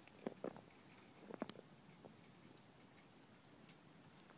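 Near silence with a few faint, short crunches, in two small clusters: a couple about a quarter to half a second in and a few more about a second and a half in.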